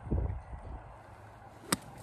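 A golf club strikes a ball out of a sand bunker once, a single sharp crack near the end. A brief low rumble comes just at the start.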